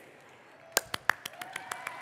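Hand clapping that starts about three-quarters of a second in with a few loud, sharp claps close to the microphone. A crowd's applause then builds up behind them.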